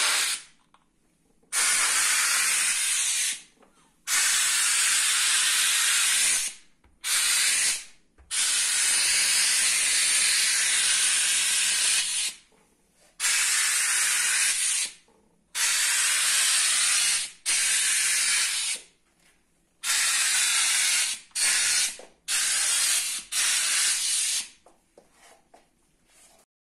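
Steam cleaner's hand tool with a microfibre-covered nozzle hissing in about a dozen bursts of one to four seconds, with short silences between, as the steam trigger is pressed and released while steaming cabinet doors.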